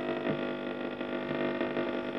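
Schaub-Lorenz Touring 30 transistor radio's loudspeaker giving a steady buzzing hum with many overtones as the tuning knob is turned between stations.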